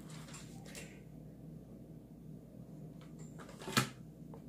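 Faint rustling of ribbon and a ribbon-wrapped chopstick being handled over a low steady hum, with one sharp click or knock near the end.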